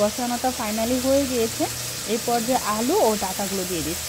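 Food sizzling in a wok of simmering hilsa curry as washed Malabar spinach (pui shak) stalks are tipped into it. A pitched voice rises and falls throughout and is louder than the sizzle.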